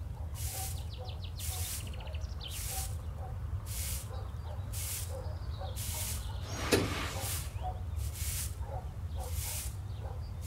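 Broom sweeping a tiled courtyard floor, one swish about every second. A single sharp clack about two-thirds of the way through is the loudest sound.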